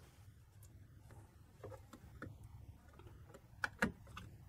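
Faint clicks and taps of a plastic isopropyl alcohol bottle being picked up and handled, with two sharper clicks close together near the end.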